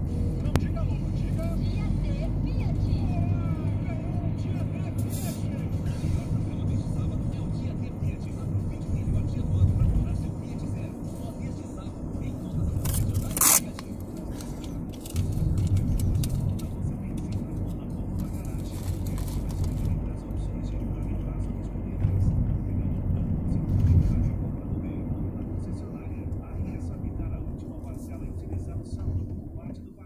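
Engine and road noise inside a moving car's cabin, a steady low rumble that swells and eases with the traffic, with a faint radio voice or music underneath. A single sharp click about halfway through.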